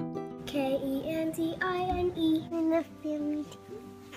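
Music with a young child's singing voice, a few short sung phrases over a steady backing.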